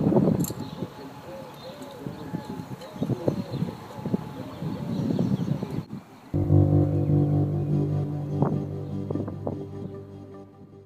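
Uneven outdoor background noise for about six seconds, then background music with sustained chords cuts in suddenly, with a few struck accents, and slowly gets quieter towards the end.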